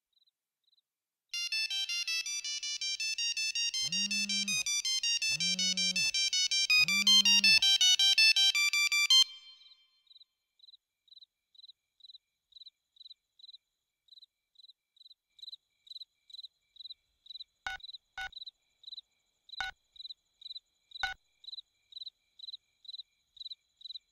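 Candybar mobile phone ringing with a fast, high melodic ringtone for about eight seconds, with three low buzzes of its vibration under the tune; the ring stops and is followed by a faint high beep repeating about twice a second, with four sharp clicks near the end.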